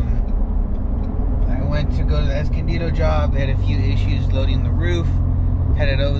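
Steady low rumble of road and engine noise inside a moving pickup truck's cabin, with a man's voice heard over it on and off.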